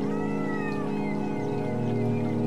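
Music of steady held tones, with a cat meowing once near the start: a single call that rises and falls, lasting under a second.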